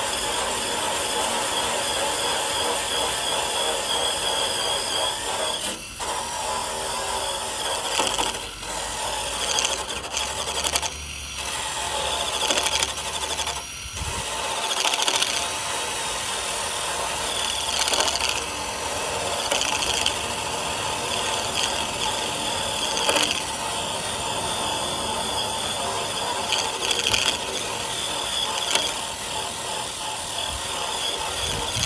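Cordless drill spinning a paint-removal attachment against a metal car fender: a steady scraping whir that stops briefly about 6, 8.5, 11 and 14 seconds in and then starts again.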